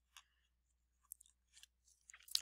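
Faint scratching of a felt-tip marker writing on paper: a few short strokes separated by near silence.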